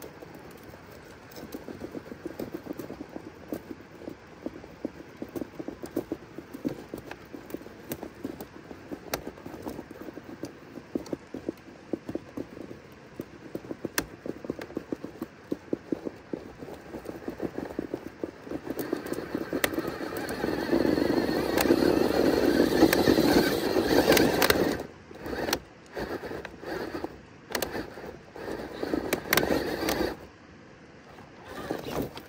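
Axial SCX6 1/6-scale RC rock crawler's electric motor and geared drivetrain whirring as it crawls over rock, with many small clicks and crunches from the tyres and loose stones. It grows louder about two-thirds of the way through, then comes in short stop-start bursts near the end.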